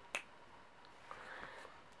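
A single sharp finger snap just after the start.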